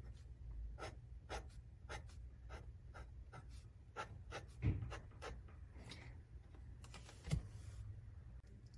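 Fine-nib fountain pen scratching faintly across a paper pad as it draws a row of short strokes, about three a second. Two soft thumps, about five and seven seconds in.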